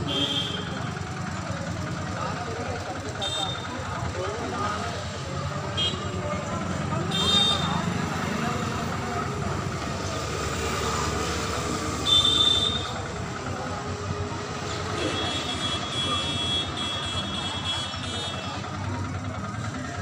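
Busy roadside ambience: background chatter of a crowd and vehicles passing, with several short high-pitched horn toots, the loudest at about 7 and 12 seconds in.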